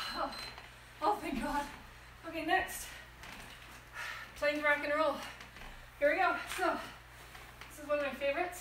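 Indistinct voice in five short bursts of a word or two each, with pauses between them.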